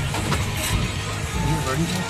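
Chevy 350 V8 of a 1979 Jeep CJ-5 running at low speed in four-wheel drive, a steady low hum heard from inside the open cab while the Jeep crawls through a corrugated steel culvert.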